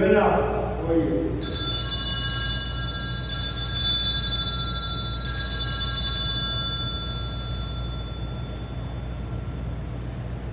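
Altar bells (a cluster of small Sanctus bells) shaken three times, about two seconds apart, marking the elevation of the host at the consecration; each ring is high and bright and the last one dies away over a few seconds.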